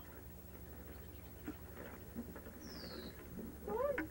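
Faint rustling and small scratchy taps of a rope being handled and fed through a fitting on a small sailboat's hull, over a steady low hum. A short falling chirp comes about three seconds in, and a voice starts just before the end.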